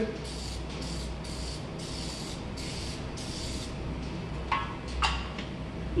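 Aerosol can of Easy-Off oven cleaner sprayed in about six short hissing bursts over the first few seconds, coating old painted lettering. Two brief, louder sounds follow near the end.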